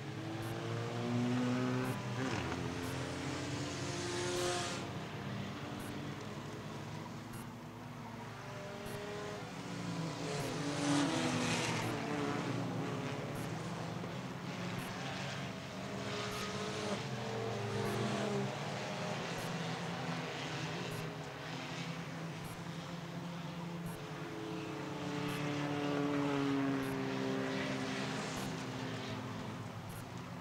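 A field of enduro stock cars racing around a short oval track, many engines running at once under throttle. The sound swells several times as packs of cars pass, then drops back between them.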